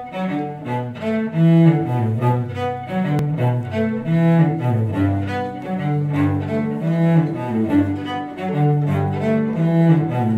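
Acoustic instrumental intro on hammered dulcimer, with a stream of quickly struck notes over sustained low notes and no singing.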